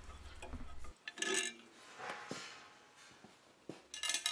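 Ratchet wrench with a 10 mm socket clicking in short, faint raspy bursts as it unbolts a steel bracket, with a few light metal clicks.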